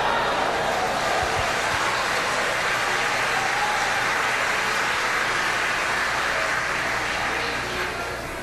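Audience applauding steadily, easing off near the end.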